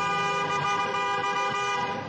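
Car horn sounded in one long, steady blast that cuts off near the end, a driver honking at a cyclist.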